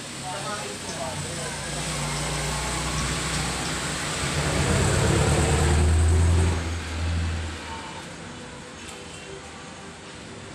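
Low rumble of a passing motor vehicle that swells to its loudest about five to six seconds in, then drops away quickly and fades.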